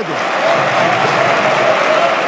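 Sustained applause from a large group of parliament members clapping, steady throughout.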